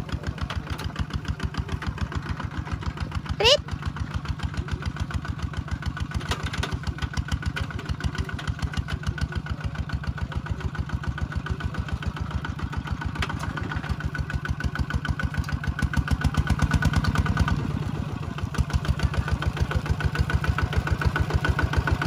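Single-cylinder diesel engine of a two-wheel walking tractor running steadily with a rapid, even beat while it pulls a plow through wet paddy soil. It grows louder for a stretch about two-thirds of the way through. A brief rising whistle sounds about three and a half seconds in.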